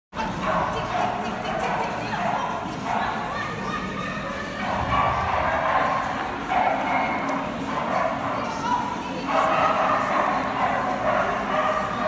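Dog barking repeatedly, over voices in the background.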